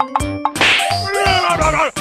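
Cartoon-style comedy sound effects over a bouncy music beat: a quick run of dings and clanging hits, a noisy crash-like burst, then several falling-pitch whistles.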